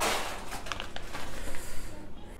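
Crinkling and rustling of a foil pouch as it is opened and the pepper is taken out, an irregular run of crackles loudest at the start.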